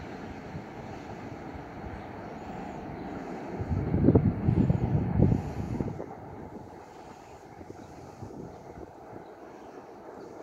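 Class 60 diesel locomotive hauling a loaded oil train, heard as a faint, steady rumble receding into the distance. A gust of wind buffets the microphone for about two seconds in the middle and is the loudest sound.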